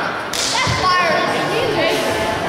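A sudden sharp smack about a third of a second in, then a dull thud from the wrestling ring as a wrestler is hauled up off the canvas, with spectators shouting over it.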